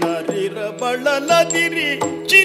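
A male singer (the Yakshagana bhagavata) sings a wavering, ornamented melodic line over a steady drone, with a few maddale drum strokes.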